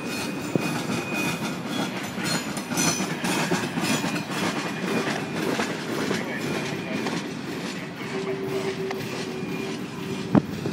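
Freight train's tank cars and covered hopper cars rolling past, steel wheels clicking over the rail joints in an irregular clickety-clack over a steady rolling rumble.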